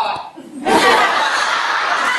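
A group laughing and chuckling, mixed with speech, starting about two-thirds of a second in after a brief lull.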